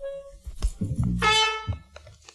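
A brass instrument sounds a brief note at the start, then a bright held note about a second in that lasts roughly half a second, with lower tones underneath.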